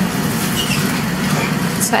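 Kyowa KW-3815 air fryer preheating on max, its fan running with a steady low whir.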